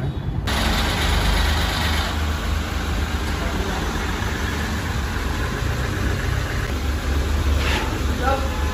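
Diesel engine of a Mahindra Bolero running steadily at low speed as the SUV creeps along the car carrier's upper deck during unloading. A steady hiss comes in suddenly about half a second in, and there is a brief sharper sound near the end.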